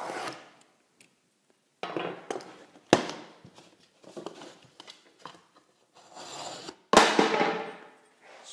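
A sheet of drywall and a large metal square being handled on a workbench: scraping and sliding, with a sharp knock about three seconds in and a louder knock near the end that trails off into a second-long scrape.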